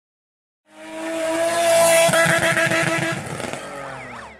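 Racing-car sound effect behind a channel logo intro: an engine note fading in under a second in, loudest around the middle, then dying away with short falling-and-rising squeals near the end.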